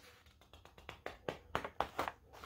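A page of a picture book being turned by hand: a quick run of soft paper crackles and taps, starting about half a second in.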